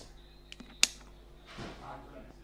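Digital multimeter's rotary range switch clicking through its detents as it is turned to the amps range: two faint clicks, then one sharp click a little under a second in, followed by a soft rustle near the end.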